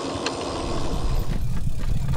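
Riding noise from a moving e-bike: wind buffeting the camera microphone over tyre rumble, the low rumble growing louder after about a second.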